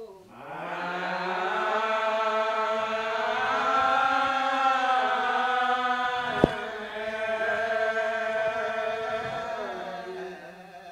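A slow hymn sung by a small group of voices in long, drawn-out notes, without words being picked out. A single sharp click about six and a half seconds in.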